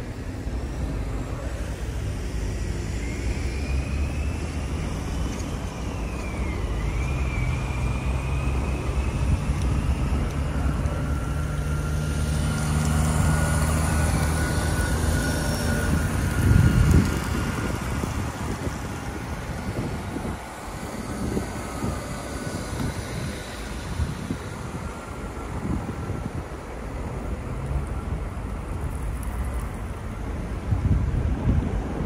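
Street traffic: cars and vans driving past on a snow-covered road with a steady low engine rumble. The sound builds as a vehicle passes close about halfway through, with a brief loud peak a little after.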